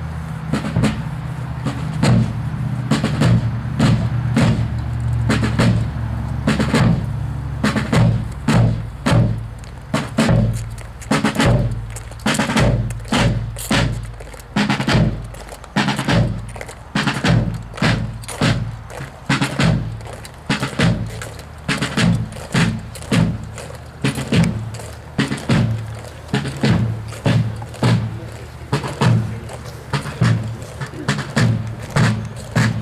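Field drums beating a steady marching cadence, sharp strokes about two a second with quick flams and rolls between.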